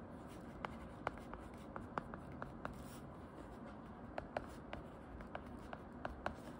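An Apple Pencil-style stylus tip tapping and writing on an iPad's glass screen: a dozen or so irregular, sharp light ticks over faint steady room noise.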